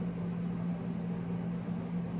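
Steady low hum with an even background hiss, unchanging throughout: room tone from a running appliance or fan.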